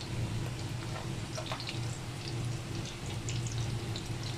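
Breaded chicken-and-potato cutlets deep-frying in hot oil: a steady sizzle with scattered small pops, the second side cooking after being turned. A low steady hum runs underneath.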